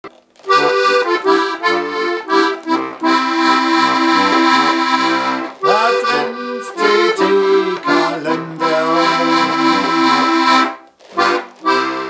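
Accordion music: a lively tune over held chords and a bass line, with a brief break about halfway and dying away near the end.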